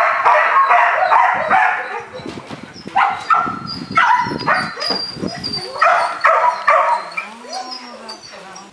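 Belgian Malinois puppy barking in several quick runs of short barks.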